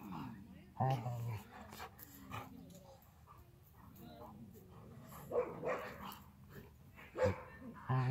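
Two dogs play-fighting, a husky puppy and a large white dog, growling and giving short barks and yowls in separate bursts. There is a low growl about a second in, and louder calls near the middle and again near the end.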